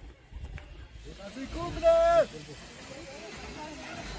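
A person's voice calling out once, about two seconds in, over faint voices in the background.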